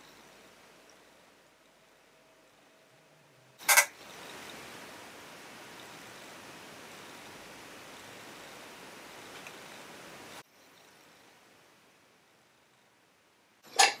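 Quiet room tone broken by a single sharp click about four seconds in, followed by a steady faint hiss that cuts off suddenly about six seconds later.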